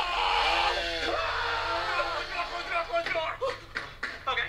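Voices screaming and wailing in long, gliding cries rather than words.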